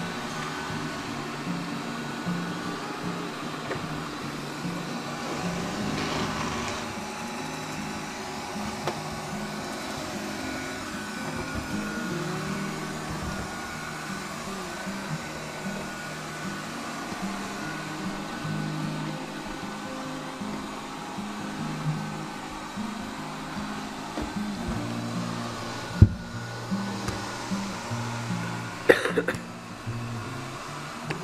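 Robot vacuum cleaner running steadily, its motor giving a thin steady whine, under background music with changing low notes. A single sharp knock comes near the end, followed by a few clicks.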